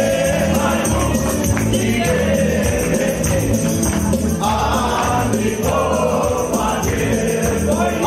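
Romanian wedding band playing light pop music (muzică ușoară) with a sung melody over a steady, even beat.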